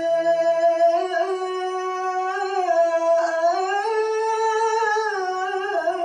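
A man chanting syair verse solo into a microphone, in a slow melody of long held notes that climbs to a higher note about halfway through and falls back near the end.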